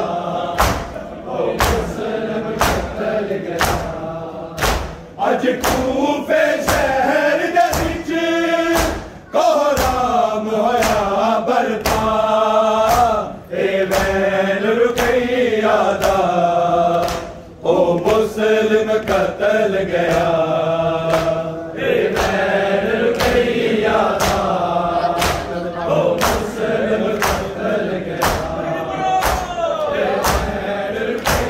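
Male congregation chanting a noha, a Shia Urdu lament, in unison. Their hands strike their chests (matam) together to a steady beat.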